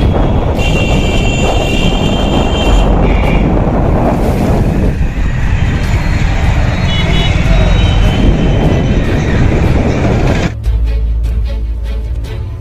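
Busy street traffic noise: vehicle engines and road noise heard from a moving vehicle, with a horn-like high tone sounding for about two seconds near the start. About ten seconds in the traffic cuts off abruptly and background music takes over.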